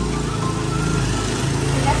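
Background music with a low, steady rumble beneath it; a voice begins to speak near the end.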